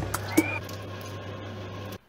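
Hot oil sizzling steadily in a pot over a low hum, with a brief rising squeak about a third of a second in.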